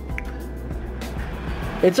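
Low, steady hum of a small electric appliance running, switched on through a Wi-Fi smart plug, with a short high blip about a fifth of a second in.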